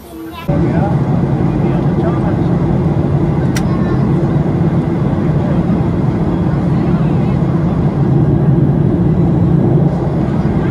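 Jet airliner cabin noise in flight, heard from a window seat: a loud, steady drone of engines and airflow with a low hum. It starts suddenly about half a second in.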